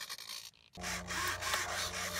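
Small hobby servo (9 g class) running, its motor and plastic gears giving a steady buzz as it swings the arm and pushrod back and forth; the buzz starts about three-quarters of a second in.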